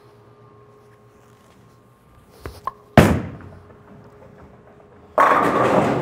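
Reactive resin bowling ball laid down on the lane with a sharp thud about halfway in, rolling away, then crashing into the pins with a loud clatter near the end.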